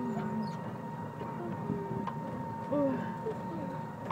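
Kiddie tractor ride running along its course: a steady high hum over a low rumble, with faint voices in the background.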